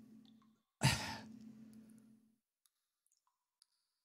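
A single breathy sigh about a second in, fading out over about a second.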